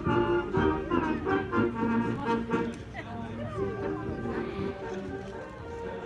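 High school marching band playing: held brass notes over drum beats.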